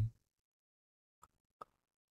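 Near silence after a man's spoken word trails off at the very start, broken by two faint short clicks a little over a second in.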